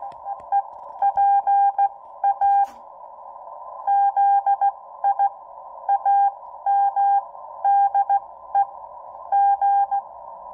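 Morse code (CW) signal received through a Xiegu X6100 HF transceiver: a single mid-pitched tone keyed on and off in dots and dashes at a slow pace of about 12 words per minute, over steady hiss through the narrow CW filter. The keying pauses for about a second near the three-second mark.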